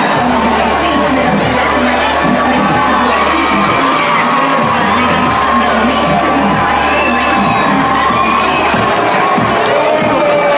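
Large audience cheering and screaming loudly, with music and its bass line playing underneath.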